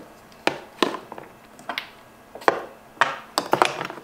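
Skincare bottles and jars knocking and clicking against each other and the plastic inside of a mini fridge as they are moved around: about ten sharp, uneven knocks.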